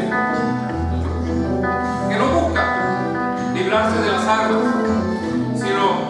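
Live band playing a song on guitars and accordion over a pulsing bass line, with held chords.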